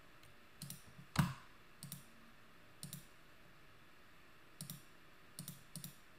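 A few faint, scattered clicks from a computer mouse and keyboard, about seven in all, the loudest about a second in.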